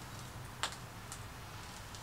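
A few faint, light metallic clicks, the sharpest about a third of the way in, as a small bent-wire metal holder is handled and turned over in the hands, over faint steady background noise.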